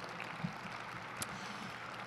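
A short pause in a talk: the steady hiss of a large hall's room tone picked up through a lectern microphone, with one faint tick a little past halfway.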